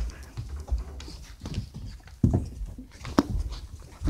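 A dog at rough play up close, with scattered rustles, knocks and handling noise; a woman cries out "Ow!" about two seconds in.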